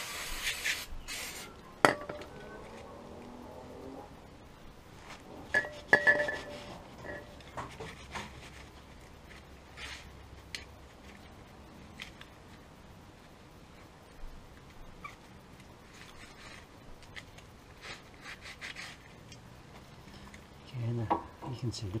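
Aerosol brake cleaner hissing in a short burst, then a second brief spurt. A sharp knock follows about two seconds in, and a few clinks that ring briefly come around six seconds in, over faint rubbing as the brake caliper is wiped down by hand.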